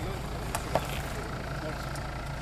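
Jeep Cherokee (KJ) engine running at low, steady revs as the SUV crawls slowly over rock in four-wheel drive, with two sharp knocks just over half a second in and faint voices in the background.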